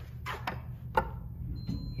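A sharp click about a second in as the hall call button of an Otis hydraulic elevator is pressed, with a few softer ticks before it. A faint, steady high-pitched tone starts near the end.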